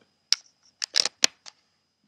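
Handling noise close to a laptop's built-in microphone as the laptop is bumped and earphones are picked up: about five short, sharp clicks and rustles in the first second and a half.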